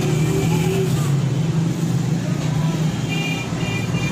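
A steady low engine-like rumble over background noise. A few short high tones come in about three seconds in.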